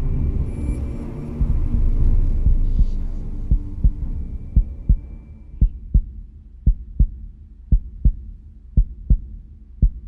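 Heartbeat sound effect in a soundtrack: low double thumps, about one pair a second, after a low rumble that fades over the first few seconds.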